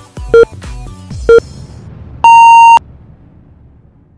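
Workout interval timer counting down: short low beeps about a second apart, then one long, higher beep marking the end of the work interval. Electronic workout music plays under the short beeps and stops before the long one, leaving a fading tail.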